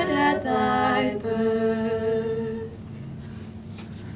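Four women singing a cappella in close harmony, ending a Christmas carol on a long held chord that stops a little under three seconds in, leaving quiet room tone.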